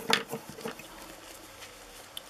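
Faint handling noise from nitrile-gloved hands on a small resin model: a few soft clicks and rustles in the first half second or so, then quiet room tone.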